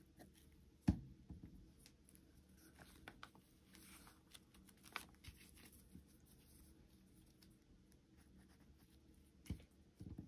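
Quiet handling of paper envelopes and small fabric tabs on a tabletop while gluing them, with light rustling and small clicks. A soft knock comes about a second in and another near the end.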